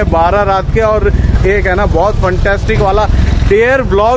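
A man talking in Hindi, without pause, over a steady low rumble.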